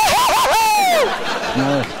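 A man's loud, high-pitched shout, wavering at first, then held and falling away, about a second long.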